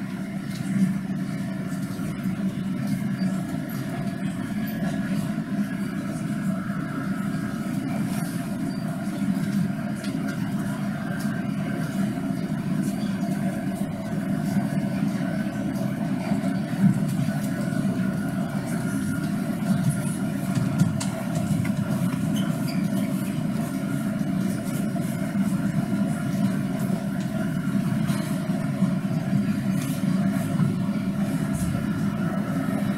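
Steady rumble of road traffic with no break or change in level, a recorded city-traffic ambience heard through the theatre's speakers.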